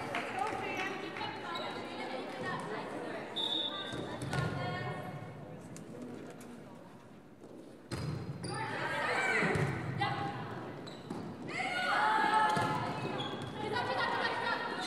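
Volleyball being hit and thudding on a gym floor amid the voices of players and spectators in a large gymnasium. The sound drops off and then comes back abruptly about eight seconds in.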